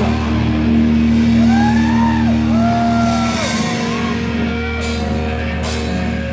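Live rock band: a loud held chord on distorted guitar and bass, with high notes that bend up and back down twice. Cymbal crashes come in about five seconds in.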